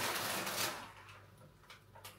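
Plastic packets rustling and shifting as a bag of frozen onion is dug out of a fridge's freezer compartment. The rustling fades after about half a second, and a couple of faint taps come near the end.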